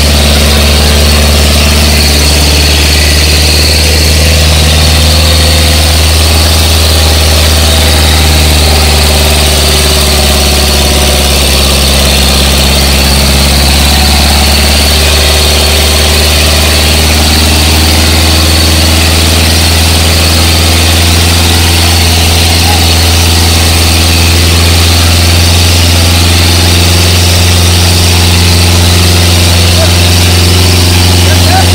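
Sonalika 750 tractor's diesel engine running hard under heavy load while dragging an 18-disc harrow through soil. Its note sags for a few seconds in the middle as the engine lugs down, then climbs back, with a faint high whine over it.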